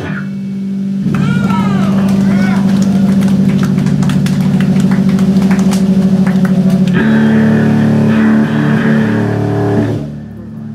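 Amplified electric guitar and bass held through the amps in a loud, steady low drone after the full-band song cuts off. The drone shifts to a new note about seven seconds in.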